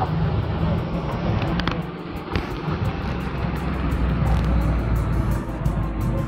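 Music playing over the low rumble of city traffic. The rumble swells about four to five seconds in, as a vehicle passes.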